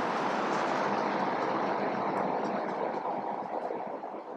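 Felt-tip marker writing on paper, a steady hiss of the tip dragging across the sheet that fades over the last second or so.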